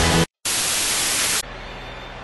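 Music cuts off, and after a brief silence comes a burst of loud, even static hiss lasting about a second, an edited-in transition between clips. It then drops to a much quieter hiss with a faint low hum.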